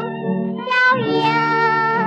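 Old 1934 shellac record of a 1930s Chinese art song: a high female voice singing with instrumental accompaniment. It holds long notes with slight vibrato and moves to a new note about a second in.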